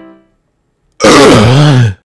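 A man's loud, rough burp from deep in the throat, starting about a second in and lasting nearly a second, its pitch falling as it goes.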